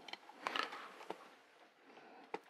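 Faint scraping of a screwdriver working a case screw on a small metal switch housing, with a small click about a second in.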